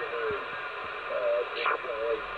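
Single-sideband voice received on an AnyTone AT-6666 10-metre radio, heard through its speaker over steady band hiss. A short burst of noise comes near the end.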